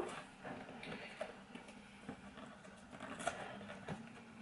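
Faint scratching and rustling of a cardboard cereal box as fingers pick and tear at its stubborn opening flap, with a few small clicks of the card.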